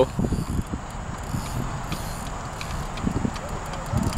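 Fishing reel clicking while a hooked carp is played on the rod, over a low rumble.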